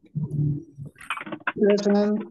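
A student's voice coming through an online video call, answering to his name at roll call. There is a short low sound early on, then speech from about halfway in, which the speech recogniser could not make out as words.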